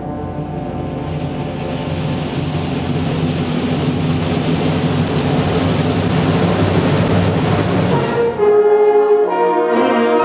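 Concert band playing a long crescendo: a swelling, hissing wash over low sustained notes builds steadily, then a little over eight seconds in it breaks off into clear, held brass chords.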